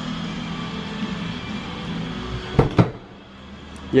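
A steady low hum, then two sharp knocks close together about two and a half seconds in, from handling the Fiat Fiorino van's opened rear cargo door.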